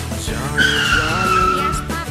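Tyre-screech sound effect: one squeal a little over a second long, slightly falling in pitch, starting about half a second in, over children's background music.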